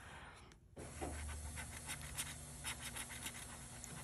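Faint scratching of a bottle opener scraping the latex coating off a scratch-off lottery ticket, in short strokes starting about a second in, over a low steady hum.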